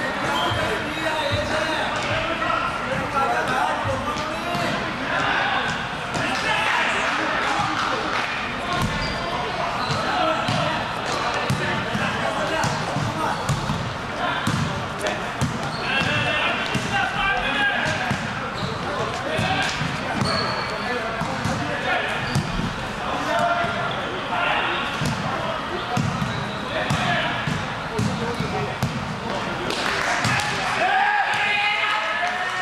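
Volleyball rally in a large gym: players calling and shouting to each other over repeated sharp hits of the ball being passed, set and spiked.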